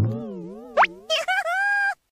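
Cartoon-style sound effects: a wobbling tone that bends up and down for about a second, a quick rising zip partway through, then a held high note that cuts off suddenly just before the end.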